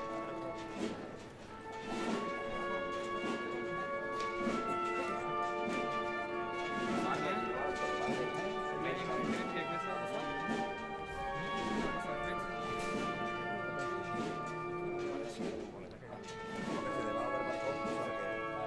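Municipal wind band playing a slow processional march, with brass and woodwinds holding sustained chords that change every second or two.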